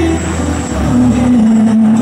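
Loud K-pop dance track playing over stage PA speakers, with a long held low note.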